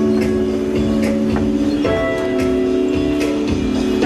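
Music playing loudly over a clothing store's sound system: held notes that shift pitch every second or two over a steady beat.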